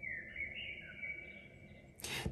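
A faint, high whistling tone held for nearly two seconds, stepping slightly up and down in pitch.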